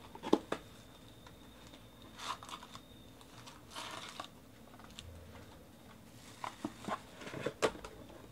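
Sports-card hobby box being opened by hand: short crinkles of the foil card packs as they are pulled out, with a few light knocks as the cardboard box and packs are handled and set down.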